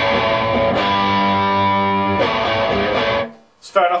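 Electric guitar through a Cornford Carrera valve amp on a crunch tone, no pedals: an A chord strummed, struck again just under a second in and left to ring, then muted a little after three seconds.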